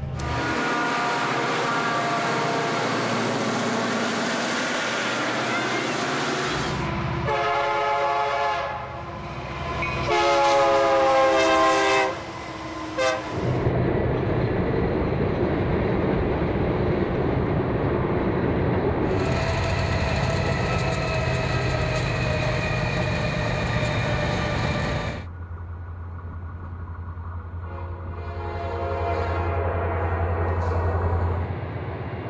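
Diesel freight locomotives and their trains passing, a steady rush of wheel and engine noise. An air horn sounds two long chorded blasts about a third of the way in. In the last few seconds a steady low diesel rumble takes over.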